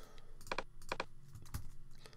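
Computer keyboard and mouse clicks: about half a dozen short, fairly quiet clicks, several in close pairs, as a web address is copied and pasted.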